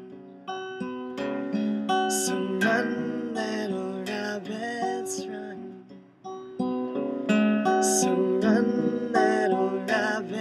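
Capoed acoustic guitar strummed and picked through a song's chords. The playing fades almost away about six seconds in, then comes back louder.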